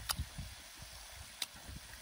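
Quiet eating: faint chewing, with two sharp clicks of a metal spoon against a skillet, one right at the start and one about a second and a half in.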